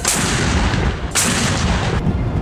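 Mortar firing: two sharp blasts about a second apart, each trailing off in a long echo.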